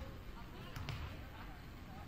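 Basketball bouncing on a hardwood gym floor, with two sharp bounces close together a little before a second in, and faint voices in the background.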